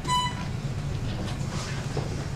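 A short high electronic beep near the start, about a third of a second long, followed by a steady low hum.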